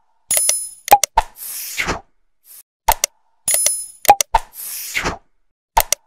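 End-card sound effects for a like-and-subscribe animation: sharp clicks, a bell-like ding and a swoosh, the sequence repeating about every three seconds.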